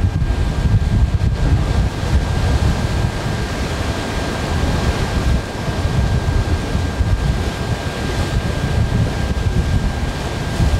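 Wind buffeting the microphone over the wash of the sea: a loud, steady low rumble with a faint steady high whine on top.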